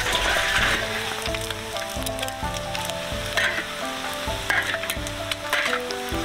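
Boiled, peeled quail eggs frying in hot oil in a large iron wok over low heat, sizzling steadily as their skins blister. A metal spatula scrapes and turns them against the wok a few times in the second half.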